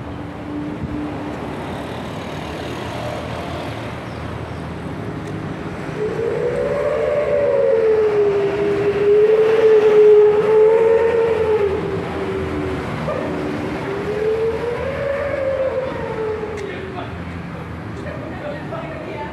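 Roadside traffic noise. Through the middle a loud wavering tone glides slowly up and down, peaking about ten seconds in and fading out near the end.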